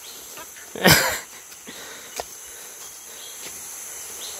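Steady high-pitched chorus of forest insects, with a short loud noise about a second in and a faint click a little after two seconds.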